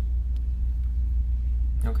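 A steady low rumble with nothing else prominent over it; a man's voice starts right at the end.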